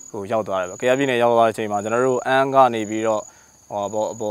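A man speaking Burmese in a steady talking voice, pausing briefly near the end. Behind him a high insect trill, typical of crickets, keeps stopping and starting.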